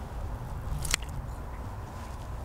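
Kitchen scissors cutting through saucy braised beef ribs on a cast-iron pot-lid griddle, with one sharp click about a second in, over a steady low rumble.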